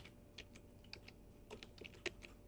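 Computer keyboard being typed on: a faint, irregular run of single keystrokes, coming quicker in the second second.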